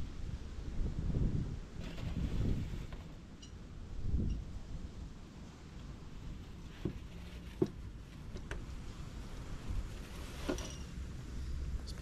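Wind buffeting the microphone in uneven low gusts, with a few light knocks and scrapes as a bee nucleus box is handled and tilted in the grass.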